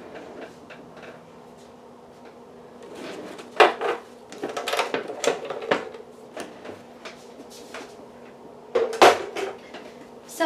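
Knocks and clatter of a plastic Swingline paper trimmer being lifted off a cutting mat and moved aside: a cluster of sharp knocks a few seconds in, and one loud knock near the end.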